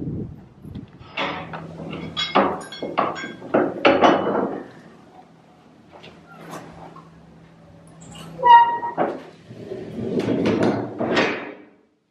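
Large wooden gate doors being pushed open and shut by hand: a run of knocks and clunks in the first few seconds, a short squeal about eight seconds in, and a rattling scrape near the end.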